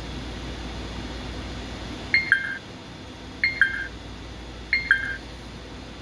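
FlySky Noble NB4 transmitter giving three short two-note beeps, each stepping down in pitch, about a second and a half apart: the key tones of its touchscreen buttons being pressed as the menus are confirmed and exited.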